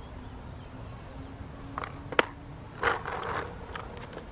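Faint handling noise from gear: one sharp click a little past halfway, then a short rustle.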